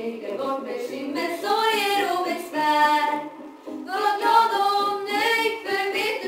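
Two girls singing a song together into handheld microphones, with a short break in the singing a little past halfway.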